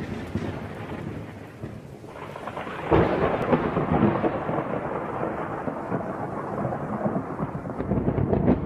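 Thunderstorm sound effect: rain with rolling thunder, and a fresh clap of thunder about three seconds in.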